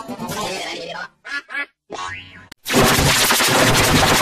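Heavily edited cartoon logo audio: a jumble of music and sound effects with two short pitched blips, broken by brief silences just after a second in and around two seconds. About two and a half seconds in, a sudden loud, dense, distorted blast of noise takes over.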